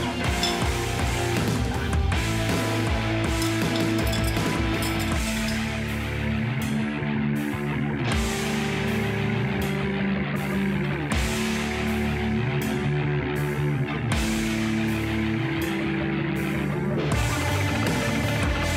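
Background rock music with guitar, its chords changing every few seconds.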